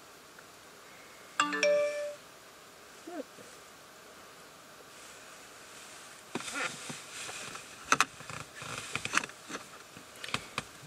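A brief electronic chime of a few steady tones about one and a half seconds in, the loudest sound here. Scattered clicks and light rustling follow in the second half.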